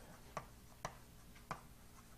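Chalk tapping on a blackboard while writing: three faint, sharp taps, unevenly spaced.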